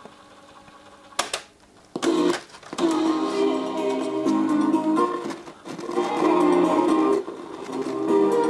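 A click of the cassette deck's keys about a second in, then music from a cassette tape playing through the Silvia New Wave 7007 radio-cassette recorder. Only one stereo channel is working.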